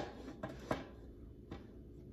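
A few faint, light knocks of a metal tube pan being moved on a countertop by hand, over quiet room tone.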